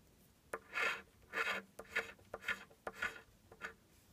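Scratch-off lottery ticket being scratched: about six short scratching strokes, roughly half a second apart, rubbing the coating off the card.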